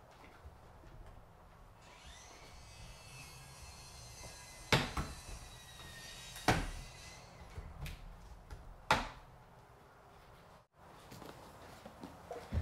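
Plastic retaining tabs of a Subaru WRX bumper's fog-light bezel snapping loose as the bezel is worked out of the bumper by hand: a few sharp snaps spread over several seconds, the loudest two about five and six and a half seconds in.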